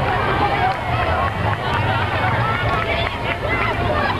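Crowd chatter: many voices talking over each other at once, with no single clear speaker.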